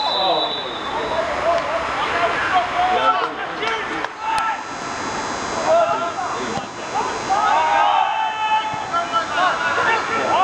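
Footballers' voices shouting and calling out across the pitch during play, several at once and overlapping, over a steady background hiss.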